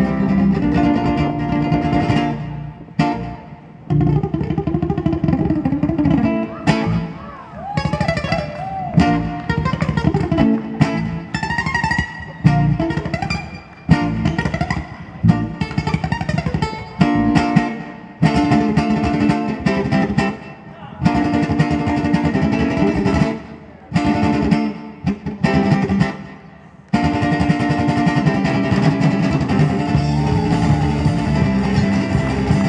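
Ukulele played live, a fast instrumental passage of picked notes that drops out briefly a few times.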